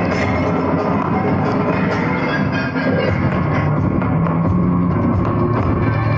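Loud live instrumental music with strings and a driving percussive beat, with the sharp strikes of step dancers' shoes on the stage mixed into the rhythm.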